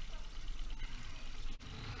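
Small boat outboard motor running at trolling speed, a steady low hum under an even hiss.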